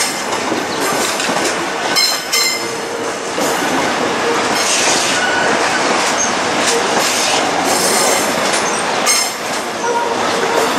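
Korail 351000-series Bundang Line electric multiple unit rolling past close by: steady wheel and running noise with clacks over rail joints. Brief high-pitched wheel squeals come about two seconds in and again near the end.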